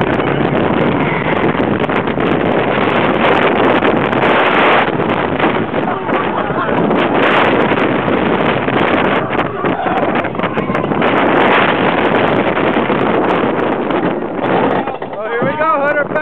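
Wind rushing over the microphone and a steel roller coaster train (a Vekoma Boomerang) rattling along its track at speed: loud and continuous, swelling several times with the ride's swoops.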